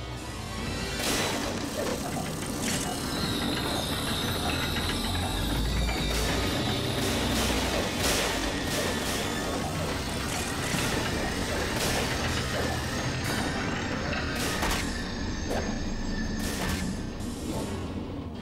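Cartoon action soundtrack: dramatic background music laid over mechanical clanking and repeated crashing sound effects.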